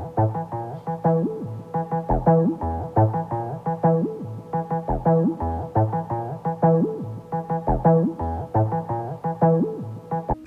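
Bass synth sample playing a quick, rhythmic line of short plucked notes, several a second, over deeper bass notes.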